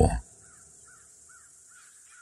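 Faint crows cawing in the background ambience, a string of short calls after a voice ends at the very start.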